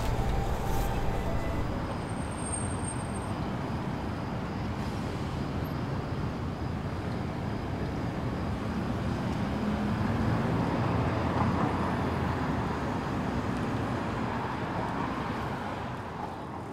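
Steady outdoor ambience of distant road traffic, a low even rumble and hiss that swells slightly about ten to twelve seconds in.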